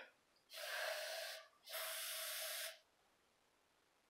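Aerosol spray paint can sprayed in two even bursts of about a second each, laying paint onto a stick to be wiped across wet resin.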